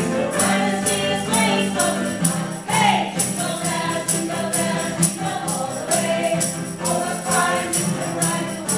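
A small mixed choir singing a gospel hymn together, accompanied by strummed acoustic guitar, with a tambourine struck on the beat about twice a second.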